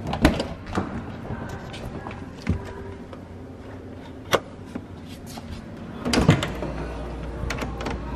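BMW E46 being opened up by hand: clicks and a knock from the door handle and door near the start, a single sharp click about four seconds in as the hood release lever under the dash is pulled, and the loudest clunks about six seconds in as the hood is opened.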